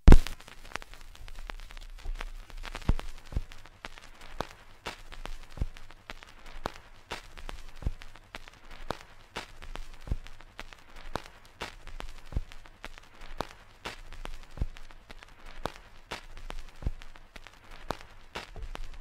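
A steady run of sharp taps, a louder one about every second with fainter ones between, over a faint low rumble.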